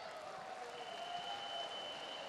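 Faint audience applause, an even patter of many hands clapping. A thin steady high-pitched tone joins it a little under a second in.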